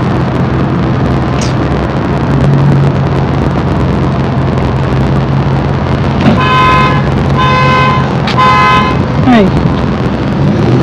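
Steady low rumble in a parking lot, with three even, pitched beeps from a vehicle starting about six seconds in, each about half a second long and a second apart.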